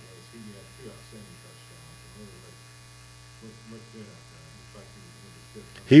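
Faint, distant speech, a question asked away from the microphone, over a steady electrical hum and buzz.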